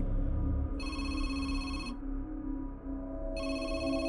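Mobile phone ringing: two rings, each about a second long, the second starting about two and a half seconds after the first.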